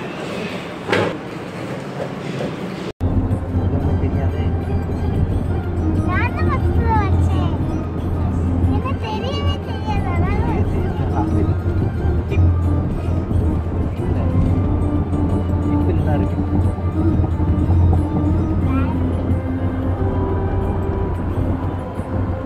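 Voices in a room for about three seconds, then a sudden cut to the steady low rumble inside a moving car, with music and voices over it.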